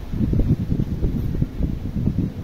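Wind gusting across the microphone: a sudden bout of irregular, low rumbling buffeting with nothing higher-pitched in it.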